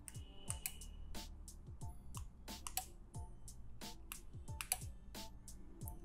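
A series of sharp, irregularly spaced clicks, several a second, from the relays of a Sonoff 4CH Pro smart switch changing over as its channels are switched on and off by an RF remote, together with clicks of the remote's buttons.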